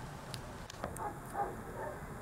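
Quiet handling sounds of hand sewing: a few faint clicks and rustles of needle, thread and satin ribbon on a foam flip-flop strap.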